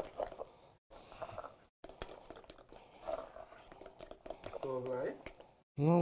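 Fritter batter with flaked saltfish being beaten in a metal bowl: a run of soft clicks, scrapes and wet squishing, broken by a few brief silences.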